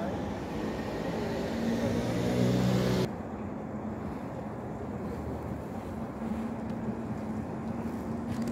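Outdoor engine drone from a motor vehicle, growing louder until it cuts off abruptly about three seconds in. A quieter steady traffic-like background follows, with a low engine hum coming back near the end.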